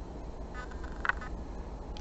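Quiet room tone with a steady low hum, broken only by a faint short sound about half a second in and a faint tick about a second in.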